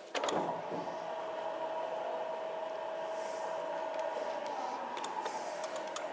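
Vertical sliding chalkboard panels being moved, their mechanism giving a steady hum for several seconds, with a few faint ticks near the end.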